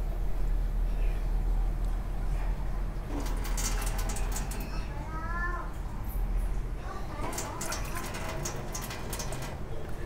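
Water from a kitchen tap running into a small glass and poured into a stainless steel pot of rice, with light clinks and splashes, over a steady low hum.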